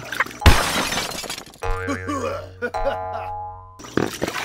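Edited intro sound effects: a sudden crash like breaking glass about half a second in, fading out, then a short musical jingle with boing sounds that cuts off abruptly just before the end.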